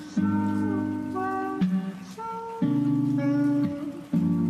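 Mellow lofi music: held chords with a simple melody on top, the chord changing about every second.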